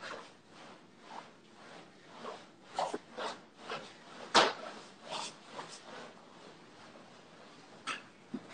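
Irregular light clicks and knocks from a flatland BMX bike being spun and balanced on a carpeted floor, with one sharper knock about four and a half seconds in.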